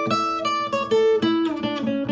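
Steel-string acoustic guitar playing a short blues lick built around an A chord shape: quick picked notes ring out over a held lower note.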